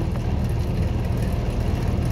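A steady, loud low rumble, like a motor running, with no single event standing out.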